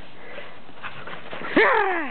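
A short, loud cry sliding down in pitch, about one and a half seconds in, over a low steady background.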